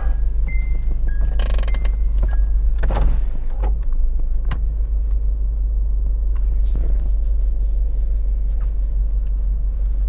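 Steady low rumble of a stationary car's engine idling, heard from inside the cabin, with scattered light clicks and knocks. In the first couple of seconds a few short chime-like notes alternate between two pitches.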